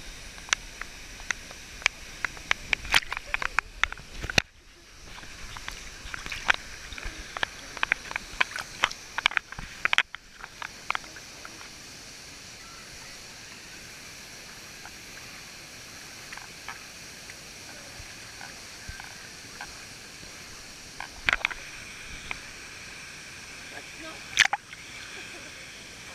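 Water sloshing and splashing around a GoPro held at the surface by a swimmer in a waterfall pool, over a steady rush of water. It is full of sharp splashes in the first ten seconds, cut by two brief sudden drops, then mostly steady with a few more splashes near the end.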